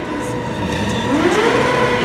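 Sportbike engine running under throttle while the rider holds a slow-speed wheelie. Its pitch rises about a second in, then holds steady.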